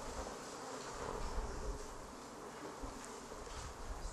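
Low, even room noise with faint rustling from a standing audience waiting in silence.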